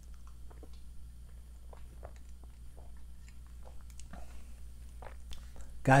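A person taking a drink: faint sips, swallows and small mouth clicks scattered through the pause, over a low steady hum.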